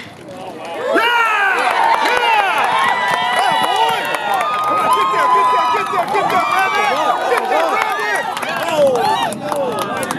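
A baseball crowd yelling and cheering after a ball is hit into play, many voices shouting over one another, some holding long calls. It swells in about a second in.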